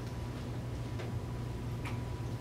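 Classroom room tone: a steady low hum with a faint thin high tone, and a few soft ticks roughly a second apart.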